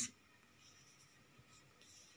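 Near silence: faint room tone with a light hiss.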